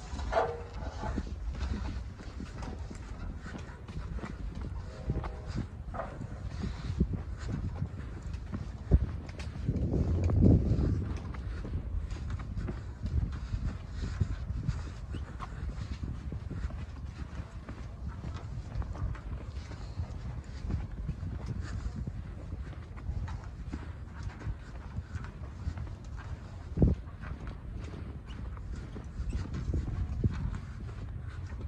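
Footsteps on a sandy dirt orchard track, irregular soft steps over a steady low rumble, with a louder swell about a third of the way in and a sharp knock near the end.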